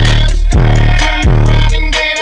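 A hip-hop track played very loud through a car stereo's two Kicker 10-inch L7 subwoofers in a sealed fiberglass box, heard inside the car: deep bass notes that sweep down in pitch at each hit, roughly every three-quarters of a second, under the rest of the track.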